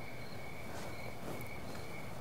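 Crickets chirping in a steady, high, pulsing trill, with faint soft footsteps about once a second.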